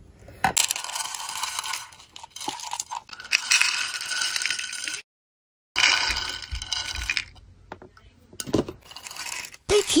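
Many small polymer clay disc beads rattling and clicking as they are poured and spilled into a clear plastic organizer box's compartments, a dense clatter with a brief dead silence about five seconds in.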